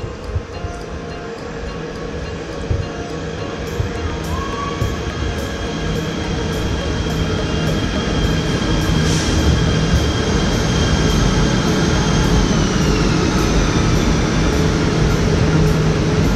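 KTM ETS electric train pulling into the platform: a rumble that grows steadily louder, with a high whine that drops in pitch about twelve seconds in as the train slows to a stop.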